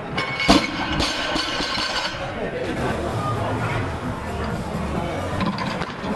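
A 152.5 kg barbell with bumper plates dropped onto the lifting platform about half a second in, one loud crash as a snatch attempt is missed. Plates clink and voices carry through the hall afterwards.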